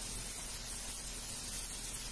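Steady hiss of vegetables frying in skillets on a gas stove.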